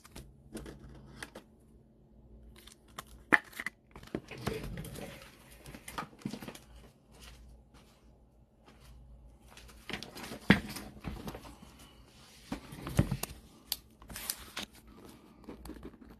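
A trading card being slid into a plastic sleeve and rigid plastic holder: soft, irregular plastic rustling and crinkling with a few sharper clicks and taps.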